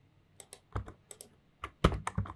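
Computer keyboard typing: a quick run of about ten keystrokes beginning about half a second in, the last few the loudest.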